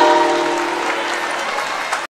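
A choir's final held chord dies away within about the first second as an audience starts applauding.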